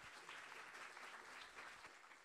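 A small audience applauding, many hands clapping together.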